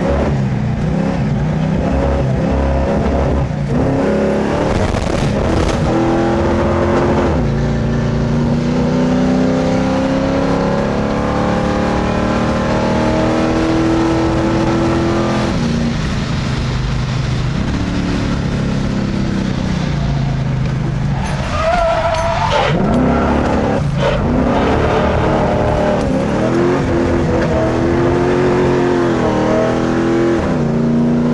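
Chevrolet Nova muscle car's engine heard on board at full throttle on a race track, its pitch climbing for several seconds at a time and dropping back at gear changes and braking. A wavering squeal of the tyres comes in briefly about two-thirds through as the car slides through a corner.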